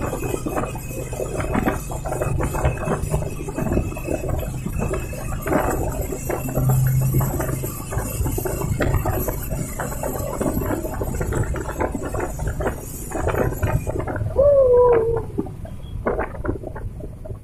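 Vehicle running through a road tunnel: a low steady hum with dense rattling and clicking. A high hiss stops about two seconds before the end, and a short falling tone follows.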